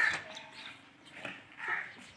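A dog barking: one sharp bark at the start and a softer one near the end.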